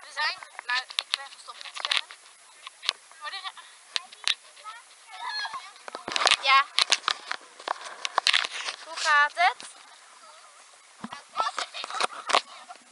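Girls' high-pitched, wavering shrieks and squealing laughter, in several outbursts, with scattered sharp knocks and splashes in between.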